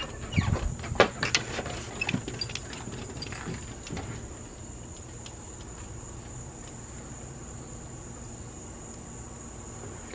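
Crickets chirring in a steady, continuous high drone on a summer evening, with a few knocks and clicks in the first few seconds.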